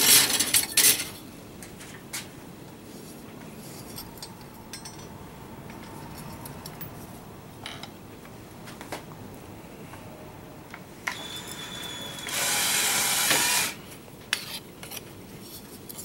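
Loose offcuts of sheet steel clatter and clink as a hand sorts through them, then quieter handling. About twelve seconds in, the bead roller's cordless-drill drive motor runs for about a second and a half.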